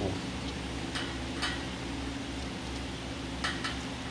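Steady hum of electric floor fans running, with a few faint clicks scattered through.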